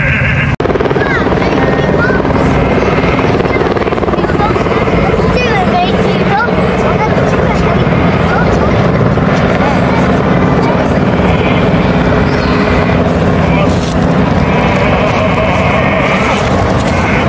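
A helicopter flying overhead, its rotor running steadily, with people talking underneath it.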